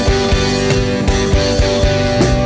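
Ska band playing live, an instrumental passage between sung lines: electric guitars, bass and drum kit with a steady, regular beat.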